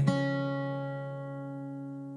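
An acoustic guitar chord left ringing and slowly dying away, its notes held steady as the sound fades.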